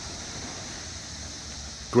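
Chorus of 17-year periodical cicadas: a constant, high-pitched droning buzz, with a faint low rumble beneath it.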